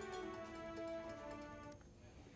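Quiet background music of held notes that stops shortly before the end.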